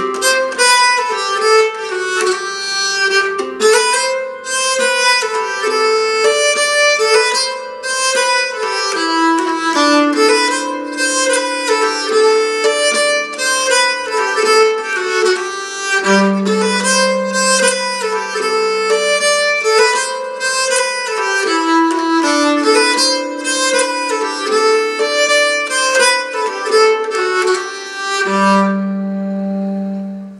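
Nyckelharpa, a Swedish keyed fiddle, bowed in a lively jig melody of quick notes. Phrases come to rest on a long held low note about halfway through and again near the end.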